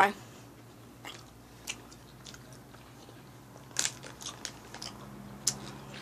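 Chewing and crunching of a Skittles candy, heard as a few scattered short crunches close to the microphone.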